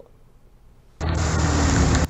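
Road noise from a vehicle-mounted camera: an engine running and wind rumble, cutting in suddenly about a second in.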